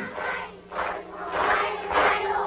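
Large group of young children singing a Thai children's song together in unison, in short loud phrases with brief dips between.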